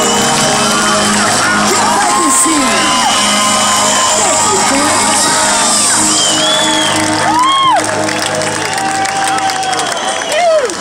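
Live concert crowd cheering, whooping and shouting, many voices rising and falling, with the band's music still sounding underneath.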